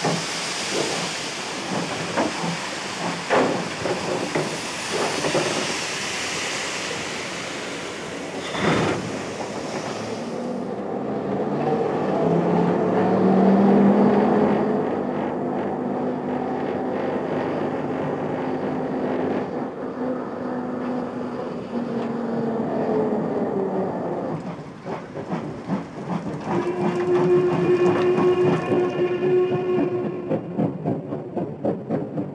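Steam locomotive sounds: loud steam hissing with scattered metallic knocks for about ten seconds, which cuts off suddenly. Then a long, low steam whistle of several notes held together for about twelve seconds that dips and fades. Near the end a steady whistle tone sounds over quick, even beats of a train on the move.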